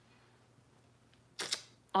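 Near silence, then about one and a half seconds in a short, quick breath in through the mouth, just before talking resumes.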